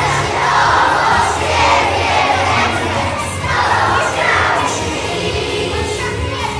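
A crowd of young children shouting and cheering over a song playing underneath.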